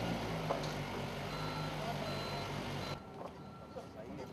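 A vehicle engine running with its reversing alarm beeping repeatedly; both cut off suddenly about three seconds in.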